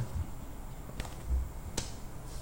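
Two light, sharp clicks, about a second in and again just before the end, with a soft low thump between them: smartphones being handled in the hand.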